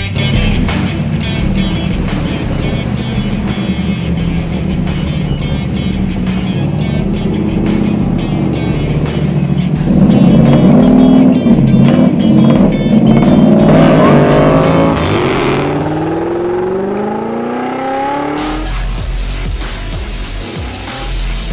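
Music, with the 6.5-litre big-block V8 of a 1968 Chevrolet Camaro coming in loud about halfway through: it revs up and down, then climbs steadily in pitch as it accelerates, before the music takes over near the end.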